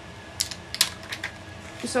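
Paper being handled by hand: a few short, sharp crinkles and snaps of small cardstock and sticker pieces, spaced irregularly, with a spoken word right at the end.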